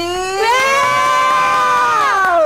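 A man's voice drawing out the last syllable of a name into one long, loud, high call. The call is held for about two seconds and slides down in pitch at the end.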